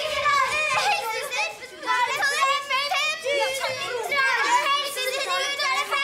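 A group of young children shouting and chattering excitedly over one another as they run in.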